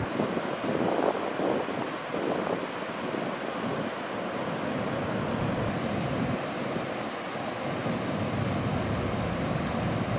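River rapids rushing steadily over rock ledges, with wind buffeting the microphone in uneven gusts during the first few seconds.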